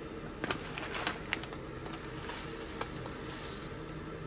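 Foil-lined snack-style pouch crinkling as dried wakame seaweed is shaken out into a ceramic bowl, with a few sharp crackles in the first second and a half and one more near the end. A steady hiss runs underneath.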